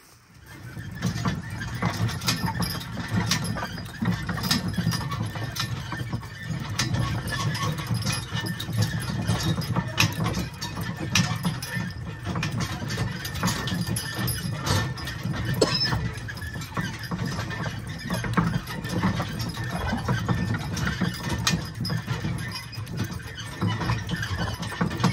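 Team of Percheron draft horses pulling a wagon at a walk: hooves clopping on the grass-and-dirt track, harness and trace chains clinking, and the wagon rumbling along behind.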